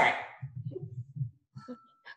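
A woman's laughter trailing off, followed by faint low muffled sounds and a brief thin steady tone near the end.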